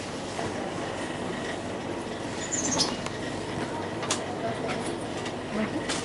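Steady hum of a shop's refrigerated meat display case and general shop noise, with a few faint clicks and a brief high squeak about two and a half seconds in.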